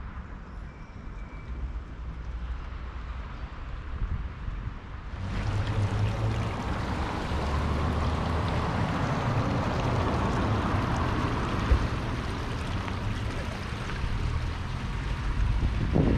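Outdoor ambience with wind rumbling on the microphone. About five seconds in the sound cuts to a louder, steady rush.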